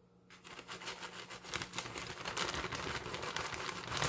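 A plastic shredded-cheese bag crinkling as it is handled and shaken out over a pot, starting about a third of a second in and going on as a dense, crackly rustle.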